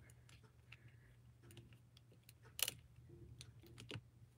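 Faint clicks and rubbing from hands pressing a large rubber stamp down onto paper, with one sharper click about two and a half seconds in, over a low steady hum.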